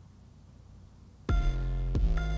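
Near silence, then about a second in a hip-hop beat starts abruptly: a deep, sustained bass under a sharp, distorted, saw-like synth lead.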